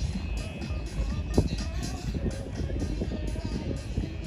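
Music with a steady beat over a constant low rumble.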